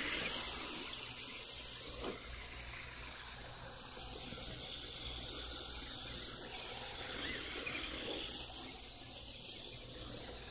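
Radio-controlled drift car sliding on asphalt: a steady hissing tyre scrub with a motor whine, swelling as the car passes close, loudest right at the start and again about seven to eight seconds in.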